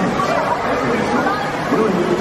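Indistinct chatter of people talking over one another, with no words clear.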